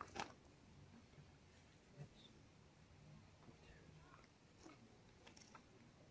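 Near silence: faint sounds of hands handling a dog's foreleg and paw, with one sharp click just after the start and a few fainter ticks and a soft thump later.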